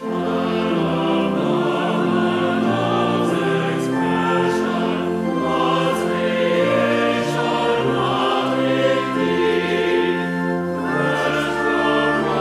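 A congregation and choir singing a hymn together with accompaniment, in sustained chords that move steadily from note to note.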